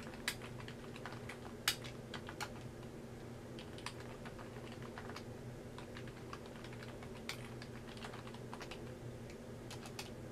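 Keystrokes on a computer keyboard as code is typed, irregular clicks with a few louder key strikes in the first couple of seconds. A steady low hum runs underneath.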